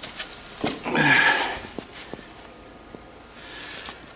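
A short sniff of breath about a second in, followed by a couple of faint clicks.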